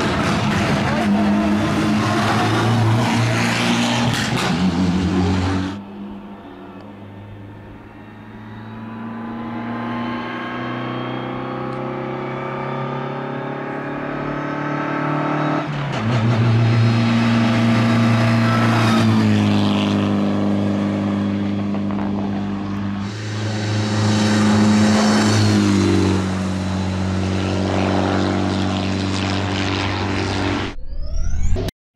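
Mitsubishi Lancer Evo X rally car's turbocharged four-cylinder engine at full throttle on a hill climb, revving up through the gears with rising pitch and drops at each upshift. The engine fades for a few seconds early on, then comes back loud as the car passes close.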